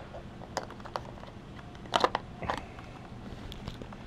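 A clear plastic clip-lid food container is handled and its lid unclipped and lifted open: a few sharp plastic clicks and crackles, the loudest about halfway through.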